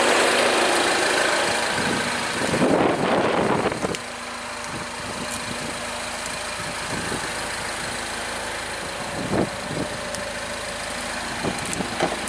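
Car engine idling steadily, with a louder rush of noise for about a second and a half around three seconds in.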